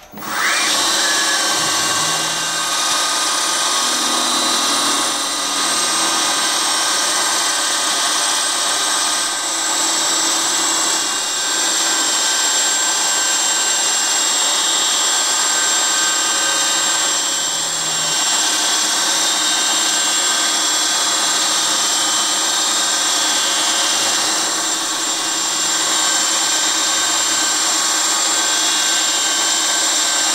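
CNC milling machine spindle spinning up, with a short rising whine, then a small cutter milling carbon steel: a steady, loud machining whine and cutting noise that runs on with only small dips.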